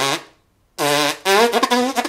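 Brass tones with tongued attacks: a note tails off, then after a short gap come two held low notes and a few quick tongued notes. This is a demonstration of a clean attack with the tongue barely moving.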